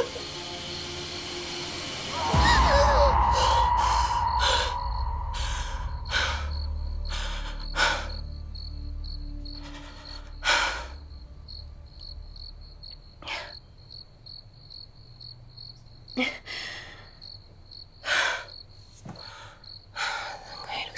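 A deep cinematic boom with a ringing drone hits about two seconds in and slowly fades. After it come a woman's heavy, ragged breaths and gasps as she wakes from a nightmare, over steady cricket chirping.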